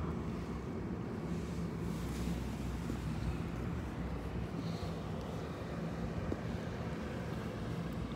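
Steady low hum of outdoor background noise with light wind on the microphone.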